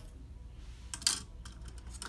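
A few light clicks, the loudest about a second in: a clear plastic Invisalign aligner tray tapping against a drinking glass as it is put into the water.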